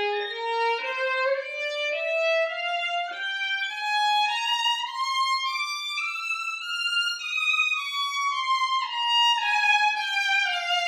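Violin playing a two-octave F minor scale in bowed single notes, about two notes a second, climbing step by step to the top F about seven seconds in and then stepping back down.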